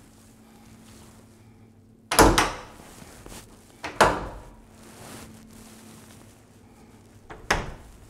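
Hotel closet doors being pushed shut: three knocks, about two, four and seven and a half seconds in, the first the loudest.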